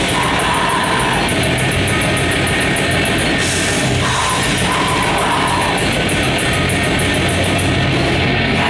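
Heavy metal band playing live, loud and without a break: distorted electric guitars and bass over drums, with fast, even cymbal strikes and a crash cymbal a little past the middle.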